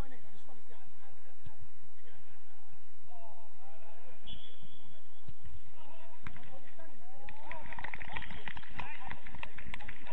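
Footballers shouting and calling to each other during play on an outdoor pitch, with a brief high tone about four seconds in. From about six seconds the shouting grows louder and is mixed with a quick run of sharp knocks as play reaches the goalmouth.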